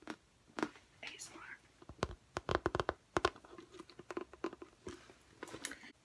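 Black handbag being handled and set down: rustling with scattered sharp clicks and knocks, in a quick run about two to three seconds in.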